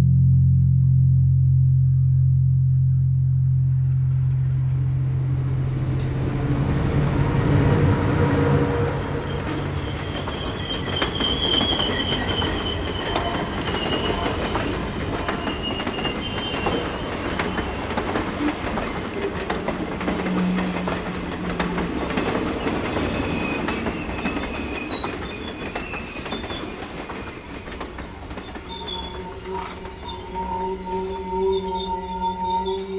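A train rolling up and passing directly overhead: a rumble of steel wheels on rail that builds over the first several seconds, dotted with clicks. High wheel squeal rings out through the second half.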